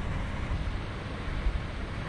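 Wind rumbling on an outdoor camera microphone, a steady low noise with no distinct events.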